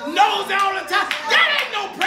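Congregation clapping hands in a steady rhythm, about two claps a second, with raised voices over the clapping.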